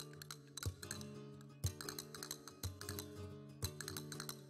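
Flamenco guitar playing a sevillanas: strummed chords with sharp clicking strokes and a strong accent about once a second.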